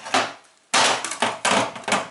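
Plastic bucket being set down upside down over a wooden block: one short knock, then from about a third of the way in a loud stretch of plastic scraping and rattling with several knocks.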